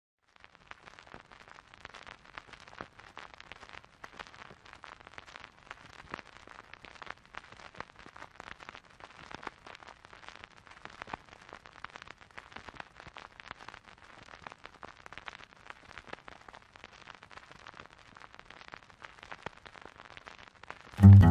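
Faint old-recording surface noise: a steady hiss packed with dense, irregular crackles and clicks.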